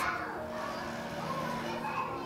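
Background chatter of children and other visitors, distant and indistinct.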